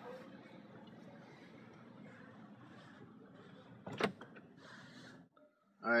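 Faint steady noise inside a parked car's cabin, with one sharp click about four seconds in and a short hiss just after it; the sound then cuts out briefly near the end.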